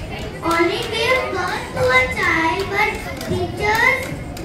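A child's voice speaking through a microphone, continuous and high-pitched.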